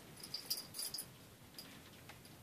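A few light, high-pitched clicks and jingles during the first second, from a plastic pacifier being handled and fitted into a reborn doll's mouth.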